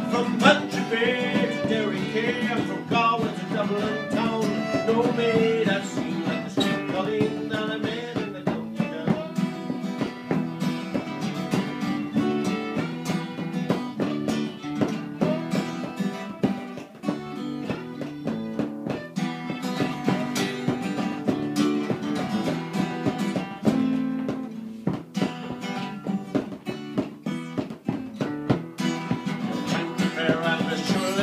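Acoustic guitar strumming, a fiddle playing the melody and a bodhrán beaten with a tipper, together playing an Irish folk tune.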